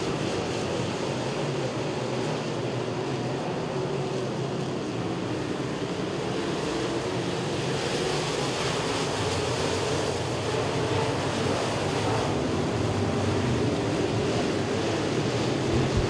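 Open-wheel dirt modified race cars running at speed around the track: the steady noise of several engines together, swelling a little around the middle of the stretch as the pack comes by.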